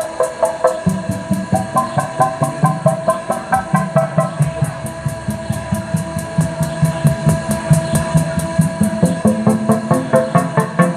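Live electronic synthpop played on synthesizers and drum machines: a steady beat of about four pulses a second under a repeating synth figure. A bass line comes in about a second in.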